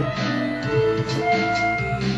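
Electronic loop playing from Ableton Live: a drum beat with a recorded synth bassline, and sustained keyboard notes played over it from a MIDI keyboard.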